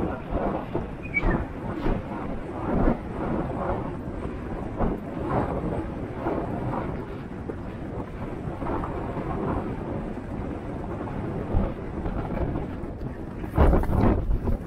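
A galloping racehorse heard from a camera worn in the saddle: the rhythmic thud of its strides, about two a second, under a steady rumble of wind on the microphone, with a louder burst of thumps near the end.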